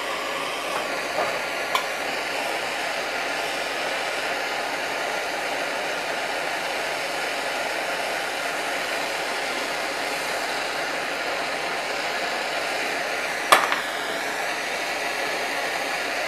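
Handheld gas torch burning steadily with an even hiss as its flame heats the solder on a metal lantern fuel font. A single sharp click sounds about three-quarters of the way through.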